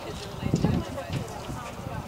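Hoofbeats of a cantering horse thudding on soft arena footing, with voices in the background.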